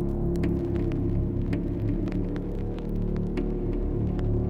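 Dark ambient horror soundtrack drone: a steady low hum of several held tones, with faint scattered clicks.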